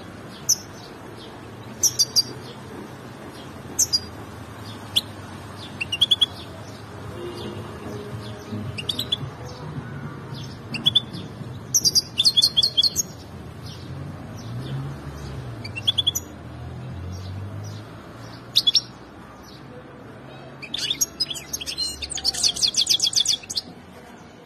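A small caged finch calling with short, high chirps scattered through, then breaking into a fast, dense run of song near the end.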